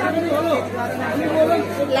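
People talking over one another in a busy public place: overlapping voices chattering, over a steady low hum.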